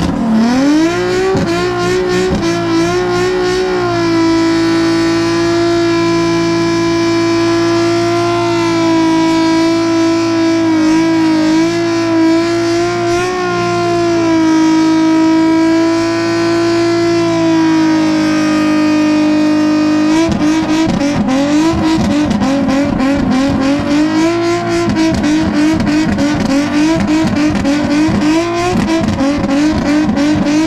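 Nissan 350Z's swapped VQ35HR 3.5-litre V6 held at high, steady revs during a burnout, rear tires spinning in thick smoke. About twenty seconds in, the revs start bouncing rapidly up and down.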